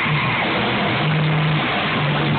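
Live punk rock band playing an instrumental stretch of a song: distorted electric guitars, bass guitar and drums, loud and continuous, without vocals.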